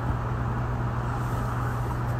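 Steady low hum with an even background hiss, with no change and no separate sound over the two seconds: the recording's constant background noise between spoken lines.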